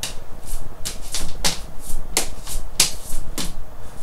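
Nunchaku swung through a neck pass and caught: about a dozen quick, irregular sharp slaps and swishes as the sticks and rope whip round and hit the hands.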